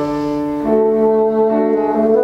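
Bassoon and piano playing classical chamber music. The bassoon holds a long note and steps up to a higher one a little over half a second in.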